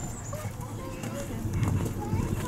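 Horse's hoofbeats on the soft sand surface of an arena as the horse is ridden past, with voices in the background.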